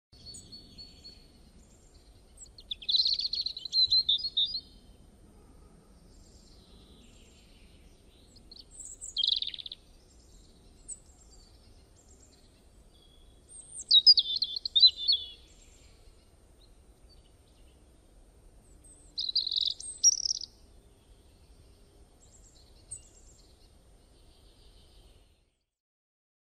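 Bird song: four short phrases of high chirping a few seconds apart, with a few faint single chirps between them.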